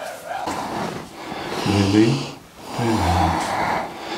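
A man's low voice giving short spoken cues, with audible breathing in and out between them.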